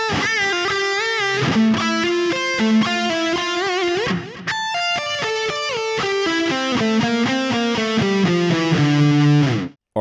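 Distorted Jackson electric guitar, tuned to D standard, playing a lead-guitar solo phrase slowly, note by note. It opens with bent notes held with vibrato, then runs on through pull-offs and stepwise runs. There is a short break about four seconds in, and the playing stops just before the end.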